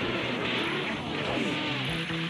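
Cartoon action sound effect: a loud, noisy rush with a few gliding tones in it, laid over the dramatic background score, which comes back clearly near the end.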